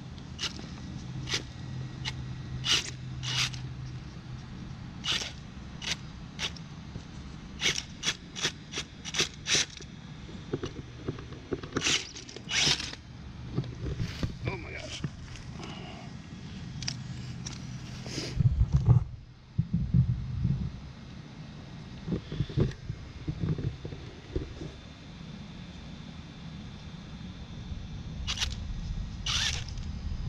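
Vaterra Twin Hammers RC rock racer crawling slowly over logs, its Castle brushless motor and drivetrain giving a steady low hum, with tyres and chassis clicking and crackling on bark and dry leaves. A burst of louder low thumps comes about two-thirds of the way through.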